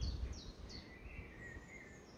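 Faint birdsong: a few quick, high, down-slurred chirps, then a longer, lower whistled note about a second in.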